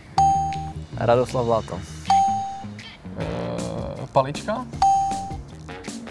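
Looping background music with a short bell-like ding that recurs three times, every two to three seconds. A man says a few words near the end.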